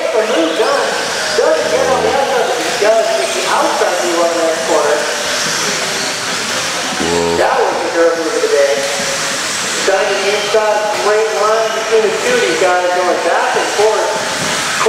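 Several electric RC buggies with 17.5-turn brushless motors racing on a dirt track, their motor whines rising and falling with throttle over a steady hiss of tyres and drivetrains. Two short buzzing tones sound about two and seven seconds in.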